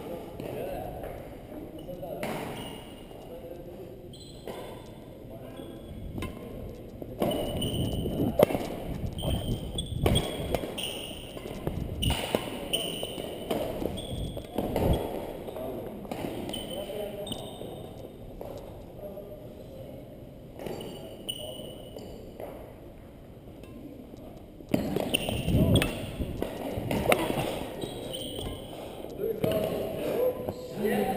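Badminton being played on a hardwood gym floor: repeated sharp knocks and thuds from racquet hits and footsteps, with short high squeaks of sports shoes, in an echoing hall. Voices carry in the background.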